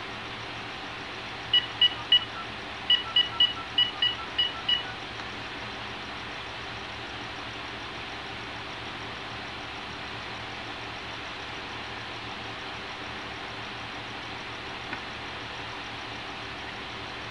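Telephone keypad beeps as a number is dialled: about ten short two-tone beeps in quick runs, starting about a second and a half in and lasting some three seconds, followed by a steady low hiss.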